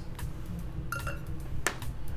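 Fresh blueberries dropped into a stainless-steel cocktail shaker tin, a few light taps and clicks, one with a faint metallic ring.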